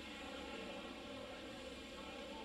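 Faint, steady background noise of a large hall with a low hum; no distinct sound stands out.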